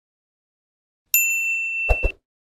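Notification-bell 'ding' sound effect of a subscribe-button animation, struck once about a second in and ringing on for most of a second, with a quick double mouse click near the end.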